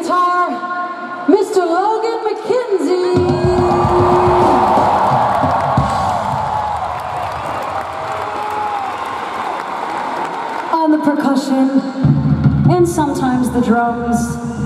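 A female rock singer vocalising into a live microphone over an arena crowd. From about three seconds in, the crowd screams and cheers loudly for several seconds over a sustained low note. Near the end the singing resumes and the band's bass and drums kick back in.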